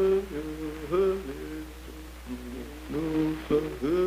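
Soundtrack music: a voice chanting slow, long-held notes, each sliding up into pitch, over a steady low hum.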